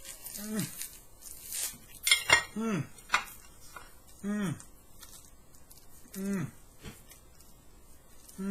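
A person biting into and chewing the thick, crusty batter coating of a deep-fried wooden log: sharp crunching and crackling in the first couple of seconds, loudest just after two seconds in. Four short closed-mouth 'mmm' hums follow one another about two seconds apart as he chews.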